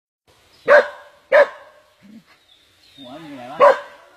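A dog barks three sharp, loud barks, about a second in, half a second later and just before the end, in distress while held in the coils of a large snake. A wavering voice is heard just before the last bark.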